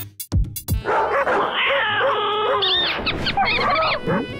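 Several small dogs barking and yapping over one another, with higher yips near the end, over background music that opens with a few sharp beats.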